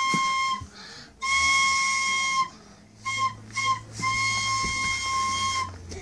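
A child blowing a toy trumpet: one fixed, breathy high note sounded in separate blows, a held note that stops early, a second long note, two short toots, then a last long note.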